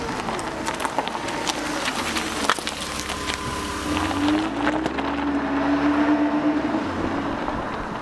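A motor vehicle engine running, with many sharp clicks over a low hum, and a tone that rises a little about halfway through.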